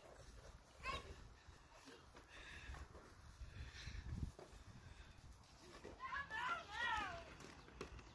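Quiet outdoor yard sound. About six seconds in, a distant high voice calls briefly in a few rising-and-falling notes.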